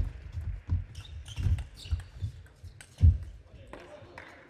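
Table tennis play: an irregular string of sharp knocks and low thumps from the ball, bats and players' shoes on the court floor, loudest at the start and about three seconds in.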